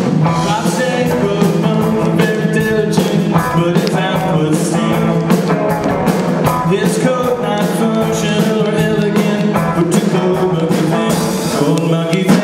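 Live rock band playing an up-tempo song: electric guitar, bass guitar and drums, with a man singing over them.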